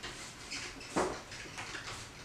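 Paintbrush scrubbing oil paint onto a canvas: a run of short, scratchy strokes, the loudest about halfway through.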